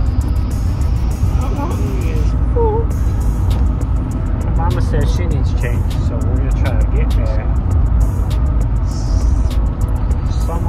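Steady low road and engine rumble inside a moving car's cabin, with music and a singing voice over it.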